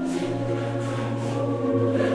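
Background music with long held, choir-like notes that change pitch in steps; a low sustained note comes in shortly after the start.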